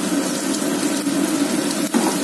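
Hot oil sizzling steadily in a wok as freshly added sliced onions fry with ginger and garlic, with a brief click near the end.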